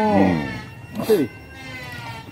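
A man's voice making two short drawn-out vocal sounds, each rising then falling in pitch, the second about a second in, over faint steady background tones.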